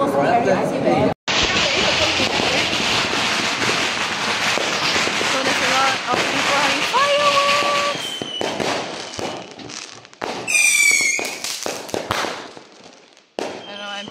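A string of firecrackers going off in a dense, continuous crackle for about six seconds, then thinning out to scattered pops and fading near the end.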